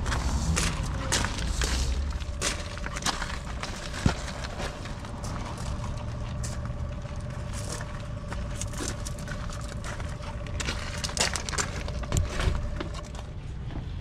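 Large plastic nursery pots being shifted over gravel: irregular knocks, scrapes and crunches, with one sharper knock about four seconds in, over a steady low rumble and a faint steady tone.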